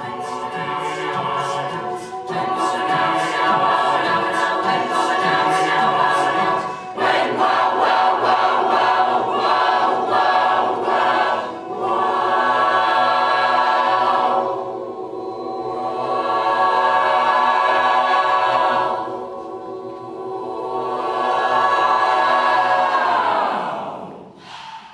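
Mixed high school choir singing a cappella: rhythmic, clipped syllables through the first half, then swelling held chords. The final chord slides downward and cuts off at the very end.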